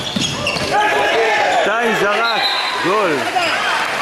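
Handball match on an indoor wooden court: a ball bouncing on the floor among players calling out to each other.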